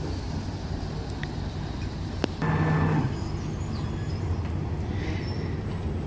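A motor yacht's engines running steadily at idle as it is manoeuvred into a berth, with a short burst from its bow thruster about two and a half seconds in.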